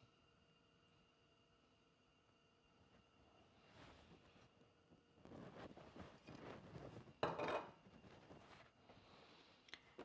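Near silence for the first few seconds, then quiet kitchen handling sounds with one sharper knock about seven seconds in: a glass olive-oil bottle being set down on the counter.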